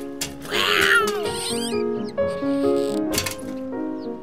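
Soundtrack music with held notes. About half a second in, a cat yowls, its pitch wavering up and down for under a second. A brief noisy burst comes a little after three seconds.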